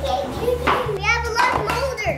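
Young children's voices talking and exclaiming over background music with a low bass line.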